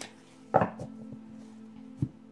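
A tarot card deck knocked against a cloth-covered table twice: one sharp knock about half a second in and another near the end.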